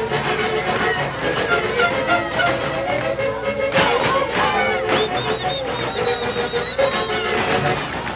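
Live huaylarsh dance music played by a band with saxophones and violins, going on steadily.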